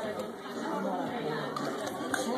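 Indistinct background chatter of several voices in a restaurant dining room, with no clear single sound standing out.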